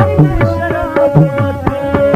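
Instrumental passage of a Pashto folk song: tabla playing a quick rhythm, its low drum dropping in pitch on the bass strokes, under a steady held drone and a wavering melody line.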